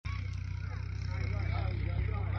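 Distant voices over a steady low rumble.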